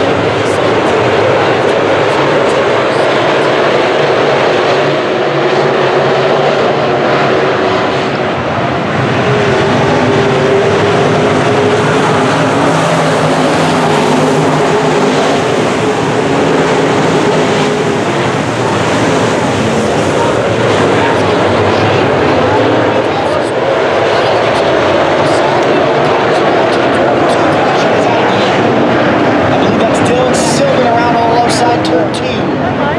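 Dirt-track modified race cars' V8 engines running at speed as the field laps the oval, a steady, loud engine noise with pitches that rise and fall as cars pass.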